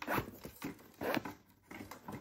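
Laces of a Nike Mercurial Superfly 9 Academy football boot being pulled through the eyelets: two main zip-like strokes about a second apart, with lighter handling rustle between.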